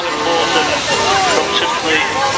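A commentator talking over a public-address system, with crowd chatter beneath; no distinct engine sound stands out.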